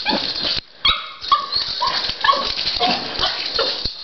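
A Schnorkie, a small schnauzer–Yorkshire terrier cross, yipping and whining in quick short calls, several a second, with a brief pause just under a second in: the dog is excited at its owner coming home.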